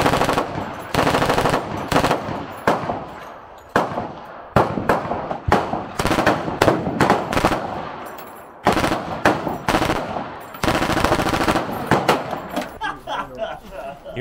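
Automatic guns firing on full auto: repeated short bursts of rapid shots with brief gaps between them, one after another.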